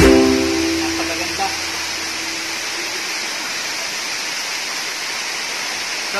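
Waterfall rushing as a steady, even hiss. Over the first few seconds a held note of background music fades out beneath it.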